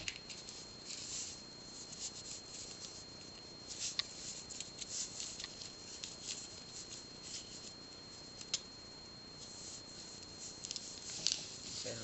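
Faint rustling and light clicking of pearl beads and very thin metal wire being handled as beads are threaded and the wire drawn tight, with a few sharper ticks of bead against bead.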